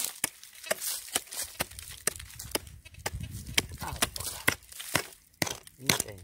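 A short-handled hand pick striking dry, gravelly soil over and over while digging out a metal detector target: sharp, uneven chops, about two a second.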